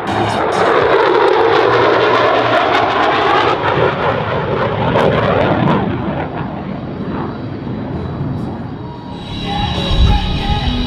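F-35B Lightning II jet, its single Pratt & Whitney F135 engine sounding as it passes at speed and pulls into a hard turn: a loud rushing jet noise with a sweeping pitch, strongest in the first four seconds, then fading. Rock music from the airshow loudspeakers plays underneath and comes back up near the end.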